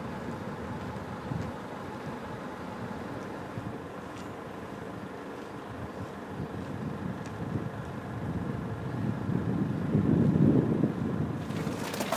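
Outdoor ambience of wind rumbling on the camera microphone, swelling in a gust about ten seconds in.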